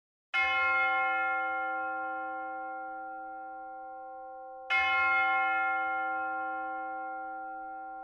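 A bell struck twice, about four seconds apart; each stroke rings out at the same pitch and dies away slowly.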